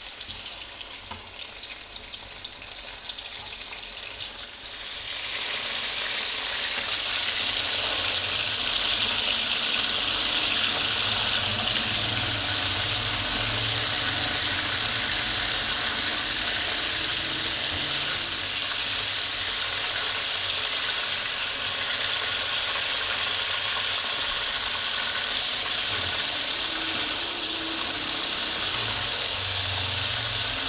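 Raw chicken pieces sizzling as they fry in hot oil in a black karahi while being stirred with a wooden spatula. The sizzle builds to a loud, steady hiss about five seconds in and holds there.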